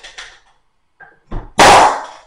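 Staple gun driving a staple into wooden door trim: a small click, then one loud sharp shot about a second and a half in.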